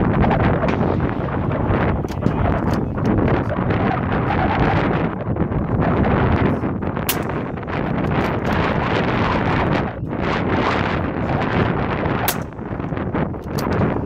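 Wind buffeting the microphone: a loud, rushing noise that swells and dips in gusts, with two faint sharp clicks about seven and twelve seconds in.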